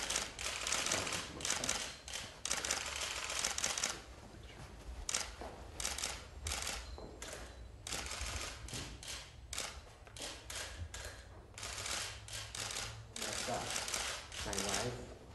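Several camera shutters clicking in rapid runs, many clicks overlapping, in clusters broken by brief pauses.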